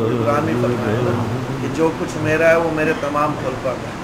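A man's voice intoning in long, drawn-out held tones that waver in pitch, like chanted recitation rather than ordinary talk.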